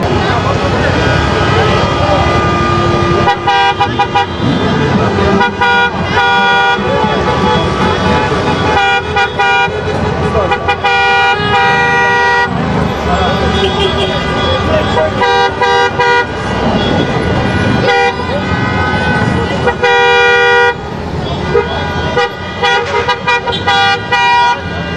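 Several vehicle horns honking, in repeated short toots and some longer held blasts that overlap, over crowd chatter.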